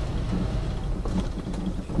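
Road and engine noise inside a moving car's cabin: a steady low rumble.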